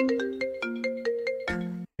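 Mobile phone ringtone playing a quick melody of short notes for an incoming call. It breaks off after about a second and a half.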